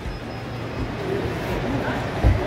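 Open-air background ambience: faint distant voices of people nearby over a steady low rumble.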